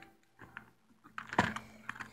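A few light clicks and taps of hands handling small objects close to the microphone, the clearest about a second and a half in.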